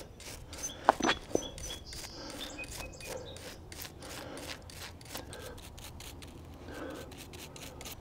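Scrubbing caked, degreaser-soaked grime off the lower jockey wheel of a Shimano Di2 rear derailleur: quick, repeated rubbing and scraping strokes, with a few sharper clicks about a second in.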